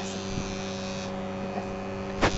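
Steady electrical hum from a running kitchen appliance, with a hiss over it that thins out about a second in.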